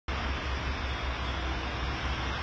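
Steady road traffic noise from a multi-lane highway: a continuous wash of tyre and engine noise with a deep rumble underneath.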